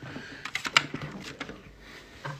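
Phone handling noise: a quick run of sharp taps and clicks as a hand touches and adjusts the smartphone that is recording, the loudest click a little under a second in.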